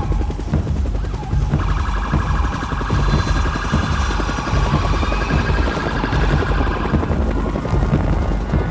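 Police car sirens wailing as a line of police cars drives past, over a loud, steady low rumble.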